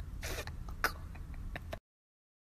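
A short breathy huff, close to a throat clearing, and a sharp click a little later, then the sound cuts out abruptly to dead silence just before the end.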